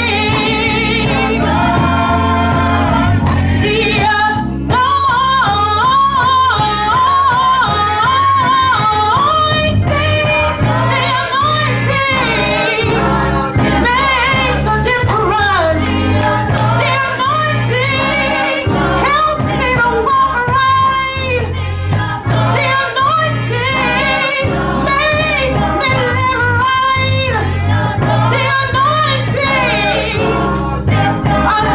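A gospel song in church: a woman singing lead into a microphone with the choir singing behind her, backed by a live band with drums and bass notes keeping a steady beat.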